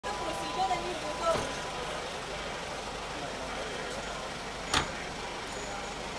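A car door shuts with a single thump near the end, over the steady sound of cars idling and faint voices.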